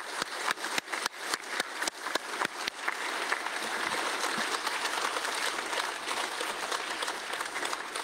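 A roomful of people applauding. Separate sharp claps stand out in the first few seconds, then blend into steady, even applause that eases off slightly near the end.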